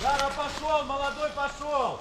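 A man talking, with the words not made out.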